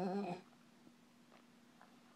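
A short, wavering vocal call lasting about half a second at the very start, followed by a faint steady hum.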